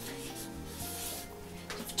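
Marker pen rubbing across flip-chart paper in a few short writing strokes, over soft background music.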